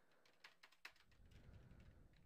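Faint computer keyboard keystrokes: a quick run of light clicks as digits are typed in.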